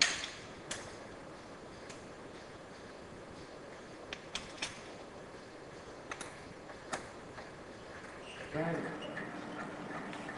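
Small metallic clicks and taps, a few at a time at uneven intervals, from screws and a small screwdriver knocking against a metal jig plate as the plate is screwed down into the machine's drawer.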